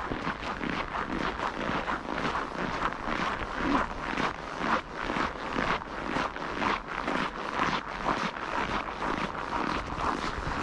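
Footsteps crunching on packed, frozen snow, a brisk walking rhythm of about two steps a second.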